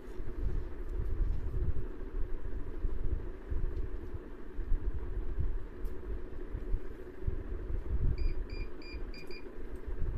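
Steady low rumbling background noise with no speech, and four quick high-pitched electronic beeps in a row about eight seconds in.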